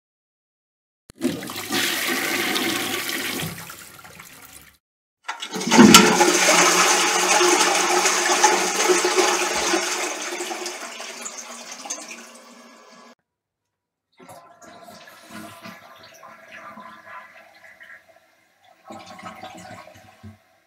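Recorded toilet flushes one after another: a short flush about a second in, then a louder, longer flush starting around five seconds that gushes and dies away over about eight seconds. Quieter flushing sounds follow in the last six seconds.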